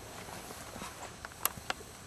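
Footsteps on a dry dirt track through brush, with a few sharp clicks underfoot around the middle.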